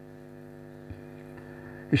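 Steady electrical mains hum with a faint click about a second in.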